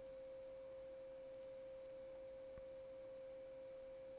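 A faint, steady pure tone held at one pitch, over an otherwise near-silent background.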